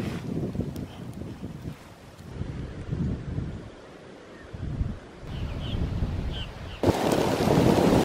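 Wind buffeting the microphone in uneven gusts, swelling into a loud gust near the end.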